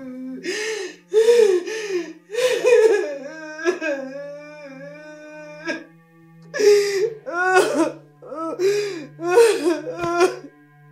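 A woman laughing and sobbing in short gasping bursts, in two runs with a lull of a couple of seconds in the middle, over held notes of background music.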